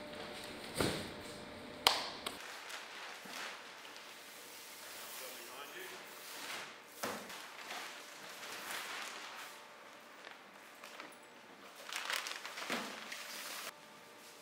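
Two sharp thuds about one and two seconds in as cardboard boxes are loaded into a van, followed by scattered footsteps, box-handling noises and indistinct voices in a large concrete room.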